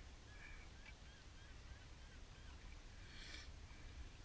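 Faint birds calling in a string of short, quick notes, with a brief hiss of noise a little past three seconds in.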